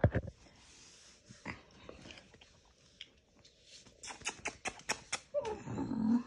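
Small dog eating food off a hardwood floor: sharp clicks as it picks up and chews the pieces, with a quick run of them about four seconds in. A short low voiced sound, falling in pitch, comes near the end.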